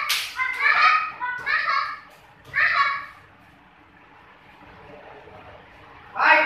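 Young girls' short, high-pitched kihap shouts while sparring in taekwondo: three yells about a second apart in the first three seconds. Right at the start, a sharp slap of a kick striking a chest protector.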